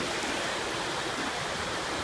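Steady wash of small sea waves and shallow water at the shoreline, an even rushing noise.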